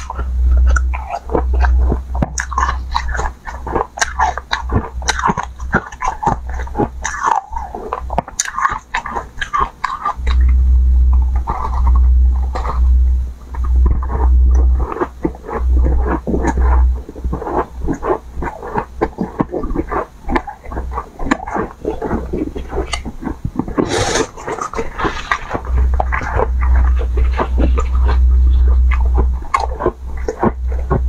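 Close-miked crunching and chewing of powder-coated ice, a dense run of sharp crunches and cracks with no pause.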